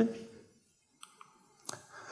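Lecture-hall pause: the last word dies away, then after near silence come two or three faint, short clicks about a second in and again near the end.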